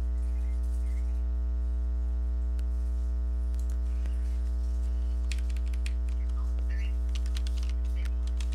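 A steady low electrical hum with a ladder of buzzing overtones, the loudest thing throughout. Over it, computer keyboard typing in two short quick runs in the second half, with a single click or two before them.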